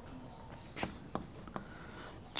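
Chalk on a blackboard: three faint, short taps and strokes.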